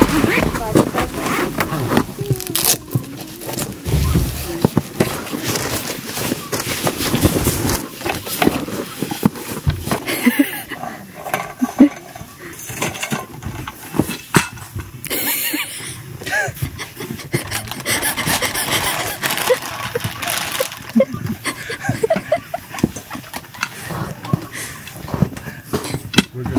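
A roof-rack awning being unpacked and set up by hand: fabric rustling and aluminium legs knocking and clicking as they are pulled out and set, with people talking at times.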